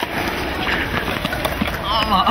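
Steady rushing noise with a low rumble, faint voices and a few light clicks.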